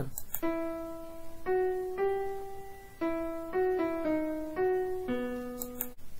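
MuseScore's built-in piano sound playing back a short single-line melody at an allegretto tempo: about a dozen notes, one at a time, each struck and fading, starting about half a second in.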